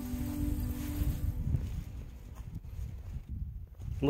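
Background music fades out in the first second or so, leaving a low, uneven rumble of footsteps and handling noise as the phone is carried across dry grass and stepping stones.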